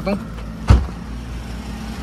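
A car door on a Mahindra Scorpio opening with one sharp clunk about three-quarters of a second in, over a steady low rumble.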